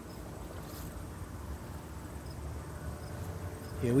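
Faint steady insect chirring, typical of crickets, over a low rumble. A man's voice comes in near the end.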